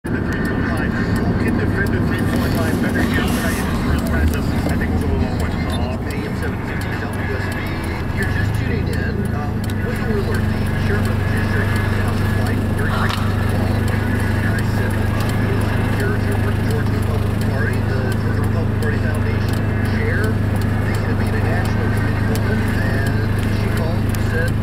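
Steady low hum heard from inside a car, growing stronger about eight seconds in, under muffled speech.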